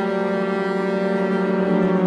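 Contemporary chamber-ensemble music: a long, steady low held note, foghorn-like, with a second held note above it that shifts to a new pitch near the end.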